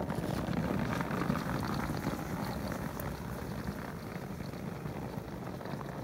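Tracked all-terrain electric wheelchair driving over packed snow, its rubber tracks and drive giving a steady, grainy crunching rumble.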